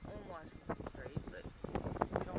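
Indistinct talking inside a slowly moving car, over the low steady rumble of the car on the road.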